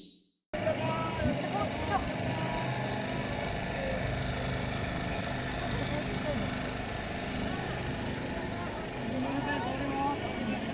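Outdoor background of people talking at a distance over a steady low hum, starting abruptly about half a second in.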